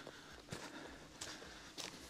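Faint footsteps on a dirt forest path strewn with dry leaves and needles, a few soft steps about half a second apart.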